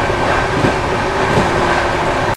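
Passenger train rushing past a station platform at speed: a loud, steady roar of wheels on rails and passing coaches, with a faint steady hum running through it.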